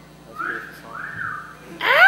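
Audience whistling in the gap between songs: two long rising-and-falling whistles, then a louder arched whoop near the end.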